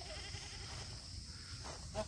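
Quiet outdoor background: a low rumble of wind on the microphone and a steady high insect drone, with faint short calls just after the start and again near the end.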